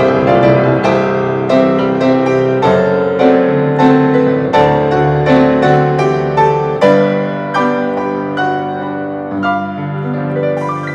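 Two grand pianos playing an instrumental song together, notes struck in a steady flow with chords under a melody, growing a little softer toward the end.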